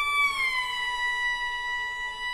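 Suona playing one long high note that bends slightly down in pitch about half a second in, then holds steady.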